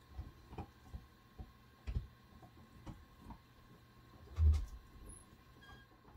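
Faint scattered clicks and small knocks, with one louder dull thump about four and a half seconds in, over a faint steady hum.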